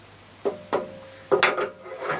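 A solid aluminium tool arm being handled against a belt grinder's steel frame: three metallic knocks, the last the loudest, with a short ringing tone after the second.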